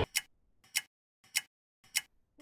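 A clock-like ticking sound effect: four sharp ticks, evenly spaced about six-tenths of a second apart, with silence between them.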